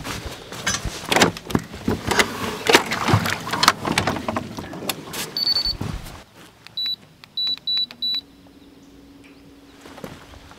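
Handling noise, sharp knocks and clatter, then one short high beep and four quick beeps as an electric trolling motor is switched on. A steady low hum starts just after the beeps, steps up slightly in pitch and holds.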